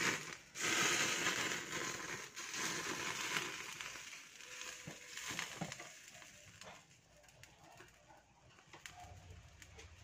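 Crackling hiss of a lidded pot of soup simmering on a gas burner, loudest in the first few seconds, then fading, with scattered light clicks.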